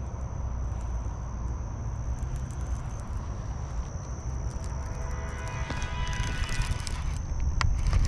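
Wind buffeting the microphone, with a steady thin high whine in the background. From about five seconds in, a baitcasting reel being cranked by hand gives a short whirring with a run of clicks.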